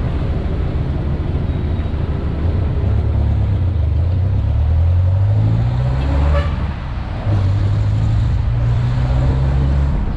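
Jeepney's diesel engine pulling along the road, rising in pitch as it speeds up, then a brief drop in loudness about seven seconds in as the driver changes gear, after which it runs on at a steady pitch.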